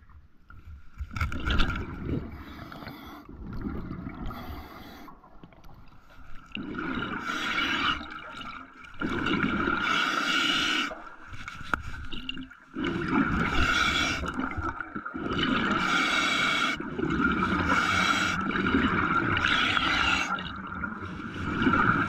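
Water gurgling and scraping in a run of noisy strokes, each about one and a half to two seconds long with short gaps, louder from about a third of the way in.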